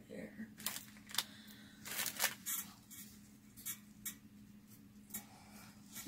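Scattered rustling, crinkling and light taps, about ten short sounds, as a tulle-trimmed cardboard craft board is handled and lifted from a table, over a faint steady low hum.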